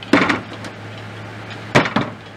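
Two sharp knocks about a second and a half apart, the second the louder, as a rifle's spring-loaded folding brace adapter is swung and snapped into its wedge-shaped lock and the rifle is handled on the table.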